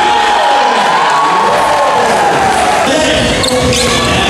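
Basketball bouncing on a wooden court under loud music, which carries a slow, wavering, gliding melody line.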